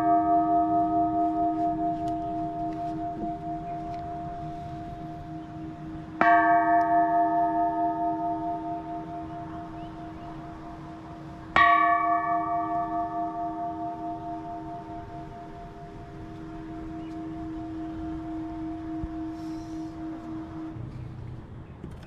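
Large hanging Thai temple bell struck with a wooden log, ringing with a slow pulsing beat and dying away gradually. It is struck again about six seconds in and once more near the middle.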